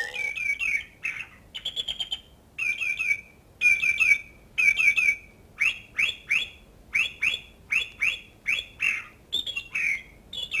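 Bird calls: clusters of two to four short, high chirps that repeat about once a second.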